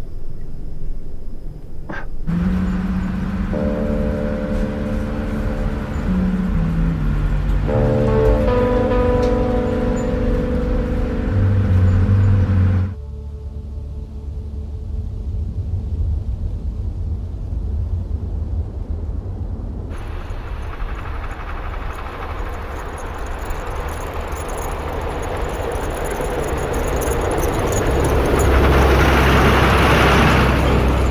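Trailer soundtrack: sustained orchestral chords over a bass line that steps downward, breaking off about thirteen seconds in to a low rumble. A rushing noise then joins the rumble and swells louder toward the end.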